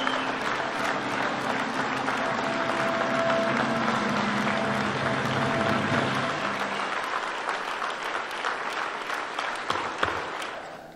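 Audience applauding steadily, with music playing underneath that fades out about two-thirds of the way through; the applause thins near the end.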